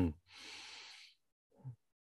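A person's quiet, audible breath lasting under a second, followed by a brief low murmur.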